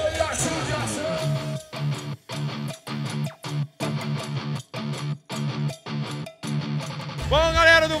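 Background music: an electric-guitar riff played in short chopped chords with brief silent breaks between them. A man's held shout trails off at the start, and a man's voice comes in near the end.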